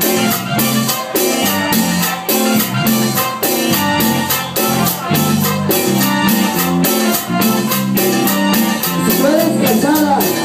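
A live cumbia band playing, with congas, a bass line and a steady quick percussion beat; a gliding melodic line comes in near the end.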